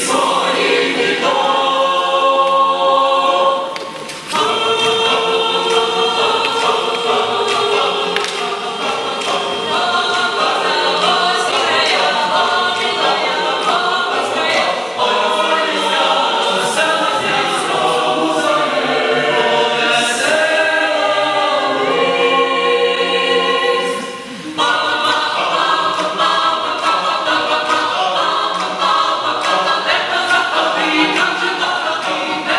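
Mixed choir of men and women singing a Ukrainian Christmas carol a cappella in full chords, breaking off briefly twice between phrases, once a few seconds in and again about two-thirds of the way through.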